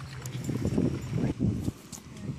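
Footsteps on pavement: a run of irregular low thumps, several a second, with a few faint clicks.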